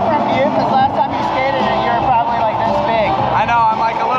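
Two men talking face to face over loud background music from a band, with guitar.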